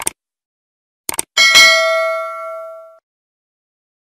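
Subscribe-button animation sound effect. A short click comes at the start and a quick double click about a second in, then a bright notification-bell ding rings out and fades away by about three seconds in.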